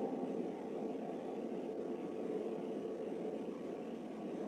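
Steady background hiss and room noise as the instrumental offering music dies away at the start.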